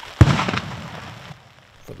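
A single loud blast with a rumbling tail that fades over about a second: a controlled demolition of a found landmine or unexploded bomb.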